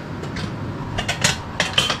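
A handful of light knocks and clinks of hard objects, glass and metal knick-knacks, being handled and lifted from a plastic storage tote. They come mostly in the second half.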